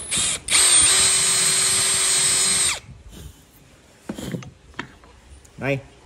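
Cordless drill with a twist bit boring a hole into a clamped block of wood: the motor runs loud and steady for just over two seconds, then stops abruptly.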